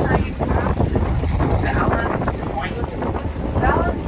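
Tour boat's engine running with a steady low rumble while underway, and wind buffeting the microphone.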